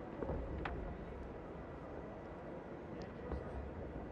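Low, steady arena ambience from a taekwondo match broadcast, with a few soft knocks.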